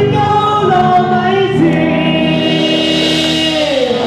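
A live band playing a pop song with a singer, electric guitars and keyboard. In the second half the music holds one long note, which slides down near the end.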